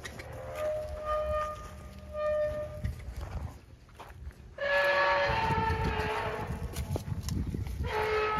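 A cow in labour mooing: two short calls, then a long, louder one starting about halfway through. The calf is half-delivered, with calving chains on its legs.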